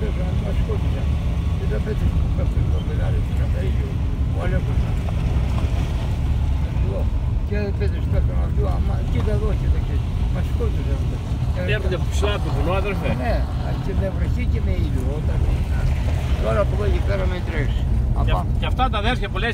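Car driving on a gravel road, heard inside the cabin: a steady low rumble of engine and tyres. Voices murmur faintly over it in the second half.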